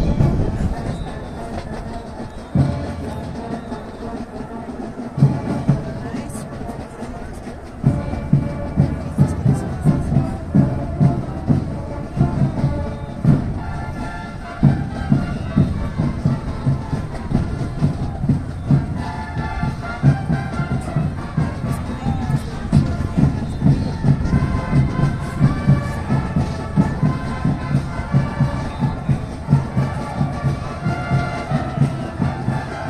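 Marching band playing with brass and a steady bass drum beat; the beat settles into about three strokes every two seconds from about eight seconds in.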